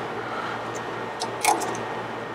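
A few light clicks and taps of a hand wrench on the rear sway bar end-link bolt, the loudest about one and a half seconds in, over a steady low hum.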